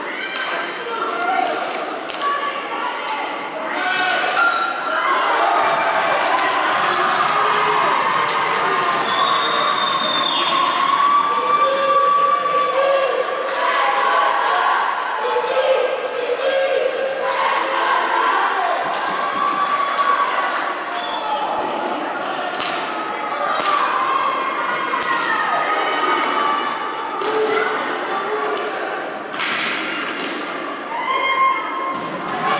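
Live rink sound of an inline roller hockey game in a reverberant hall: players and spectators shouting, louder from about four seconds in, with repeated sharp clacks and thuds of sticks, puck and bodies against the boards.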